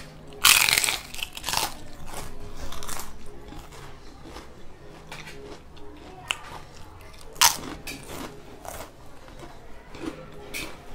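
A person biting into food and chewing it close to the microphone, with a loud bite about half a second in and wet mouth sounds and smaller clicks after it. A sharp smack comes about seven and a half seconds in.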